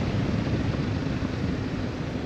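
Motorcycle riding along a country lane: a steady mix of engine, road and wind noise heard from a camera mounted on the bike.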